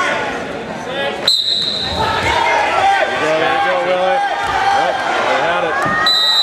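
Referee's whistle blown once, a short high blast about a second in, starting the wrestling from the referee's position. Several voices then shout across the gym.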